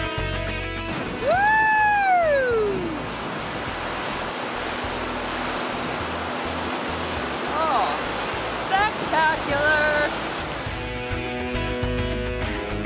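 Ocean surf surging and breaking against rocky cliffs, a steady rush of water, between stretches of guitar music that fades out in the first second and comes back near the end. About a second in there is one long call that rises and then falls, and a few short calls follow around eight to ten seconds.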